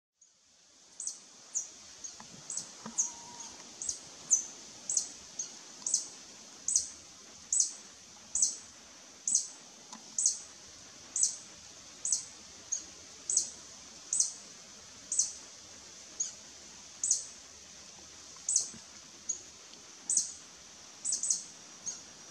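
Violet sabrewing (a large hummingbird) calling: a long series of sharp, high chip notes, about one every half second to a second. This is the species' territorial calling.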